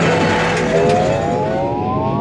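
Arcade racing game's engine sound revving up: a whine of several tones climbing steadily in pitch from about a second in.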